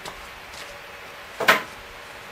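A single sharp knock about one and a half seconds in, over faint room hiss.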